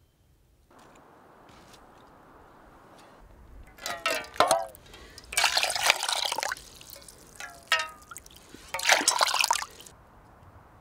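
Water poured from one metal pot into a stainless steel pot: two splashing pours of about a second each, with bubbly gurgling chirps before each pour.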